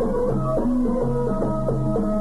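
Iraqi traditional music playing an instrumental passage: a melody of short held notes stepping up and down over a drum beat.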